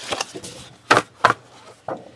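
Sheets of 12-by-12 patterned scrapbook paper being handled and shuffled on a table: about four short rustles and taps as the sheets slide and are laid down.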